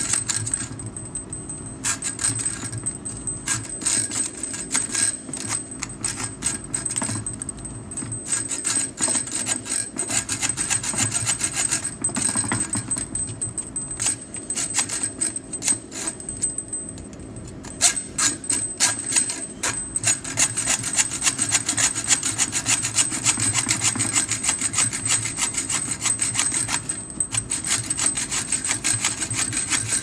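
Hand hacksaw cutting through a steel electrical conduit clamped in a vise: a continuous run of rasping back-and-forth strokes of the fine-toothed blade on metal. The strokes get quicker and more even in the second half.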